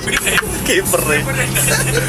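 People's voices inside a moving car's cabin, over the steady low hum of the car running on the road.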